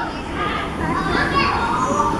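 Young children playing and talking, several voices overlapping in a continuous hubbub.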